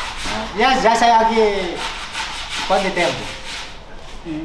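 Men's voices laughing and talking, in two stretches: one about a second long starting about half a second in, and a shorter one near three seconds.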